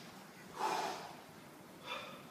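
A person's forceful breath out about half a second in, with a shorter one near the end: breathing hard with the effort of a bungee-strap exercise.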